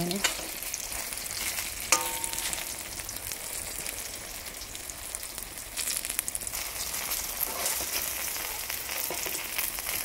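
Fish pieces shallow-frying in oil in a wok, a steady sizzle, while a metal spoon scrapes and turns them. About two seconds in, the spoon strikes the wok with a sharp, briefly ringing clink, and a few lighter clicks follow around the middle.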